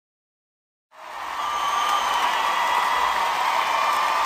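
A second of silence between two tracks, then about a second in a steady wash of noise fades in and holds, with a faint high held tone over it: the opening ambience of the next track, before its guitar comes in.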